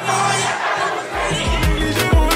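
A crowd shouting and cheering over music. About a second in, a new dance track starts with a deep bass-drum beat.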